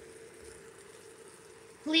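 Faint sizzle of a chicken breast frying in melted butter in a nonstick pan, with a steady hum underneath. A woman's voice comes in near the end.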